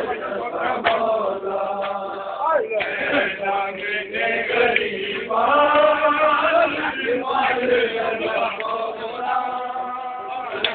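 A crowd of men chanting a noha, a Shia lament, in unison, the voices carrying on without a break.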